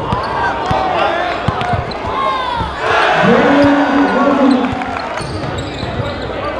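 A basketball being dribbled on a hardwood gym floor, with sneakers squeaking. About three seconds in, a voice shouts out, echoing in the large hall.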